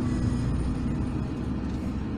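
Steady low rumble of a car driving, heard from inside the cabin: engine and road noise.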